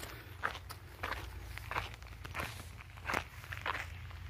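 Footsteps on loose stone ballast at a steady walking pace, about six steps.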